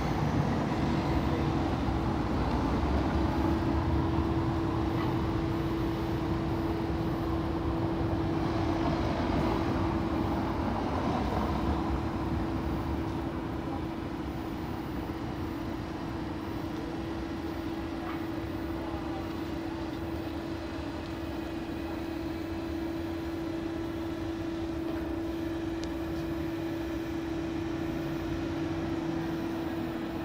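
Town-square street ambience: steady traffic noise with a constant low hum, the whole growing a little quieter about halfway through.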